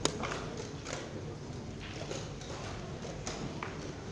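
Blitz chess being played: a chess clock's button pressed with a sharp click at the start, followed by several scattered light knocks of plastic chess pieces set down on the board and further clock presses.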